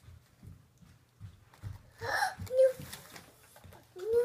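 A toddler's breathy, excited gasp about halfway through, followed at once by a short high-pitched vocal sound, which is the loudest moment. Soft low knocks come before it.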